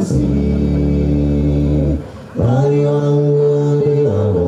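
Male a cappella group singing close harmony with a deep bass line, holding one long chord for about two seconds, then after a short breath a second held chord.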